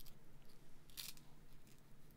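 Quiet room tone with a low hum and two faint short clicks, one at the start and one about a second in.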